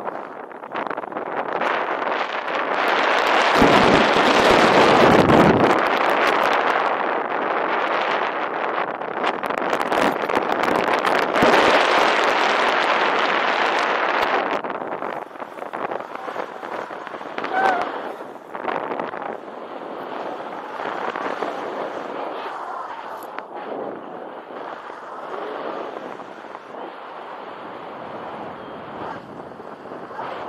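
Wind buffeting and rushing over the microphone of a paraglider's camera during the takeoff run and climb-out. It is loudest and gustiest in the first half, strongest a few seconds in, then eases to a softer steady airflow hiss once the glider is flying.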